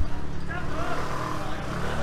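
Busy market-street background: a steady low rumble from a motor vehicle running close by, with faint voices of other people mixed in.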